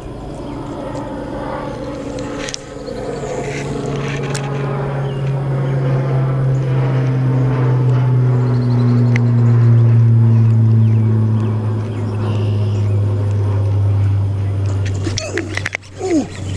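A low, steady engine drone that swells to its loudest about ten seconds in, then fades.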